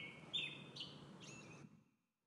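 Faint bird-like chirping: about four short calls in the first second and a half, dying away.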